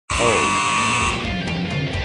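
A buzzer sounds, a harsh steady buzz that cuts in abruptly and stops after about a second; music follows.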